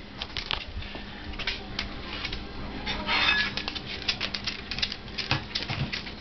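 Scattered light taps and clicks of footsteps moving across a tiled floor, with a short rustle about three seconds in.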